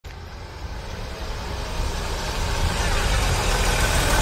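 An SUV driving up and approaching, its engine and tyre noise growing steadily louder as it comes close.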